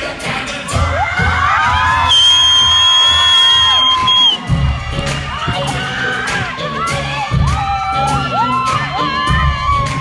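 Theatre audience cheering and shouting, with long high-pitched screams and whoops, over dance music with a bass beat. The bass drops out for a couple of seconds while the shouting peaks, then the beat comes back about halfway through.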